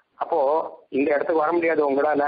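Only speech: a man lecturing in Tamil in short phrases with brief pauses, the recording thin and radio-like.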